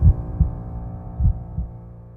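Heartbeat sound effect: two double thumps, lub-dub, about a second apart, over a held low musical chord that fades out.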